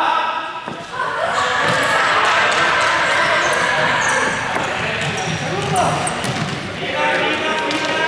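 A group of students shouting and calling out together while running on a sports hall court, with thudding footfalls on the floor. The hall makes it echo. The din swells about a second in and eases near the end.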